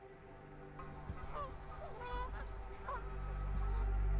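Several short honking calls from wild birds, goose-like, come between about one and three seconds in. Under them a sustained ambient music drone fades in and slowly grows louder.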